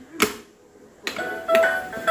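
A plastic toy oven clicks once as it is switched on, then its sound chip plays a simple electronic jingle of steady, stepping beeps.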